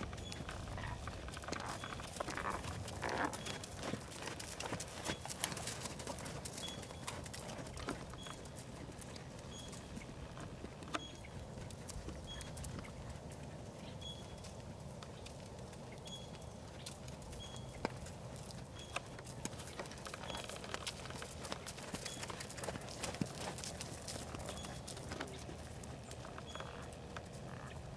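A horse's hooves beating on sand arena footing as it works at canter, a running series of soft hoofbeats and knocks.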